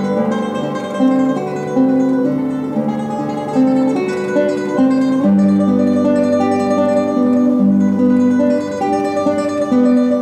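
Solo classical guitar playing a slow melody of plucked single notes over long-held bass notes.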